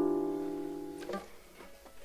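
A close-voiced E Phrygian chord on a nylon-string classical guitar, fading as it rings and stopped about a second in. A small finger noise on the strings follows, then a quiet gap.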